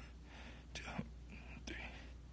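A man's breathy whispering and exhaling in a few short bursts, the effortful breath of someone starting a set of ab exercises.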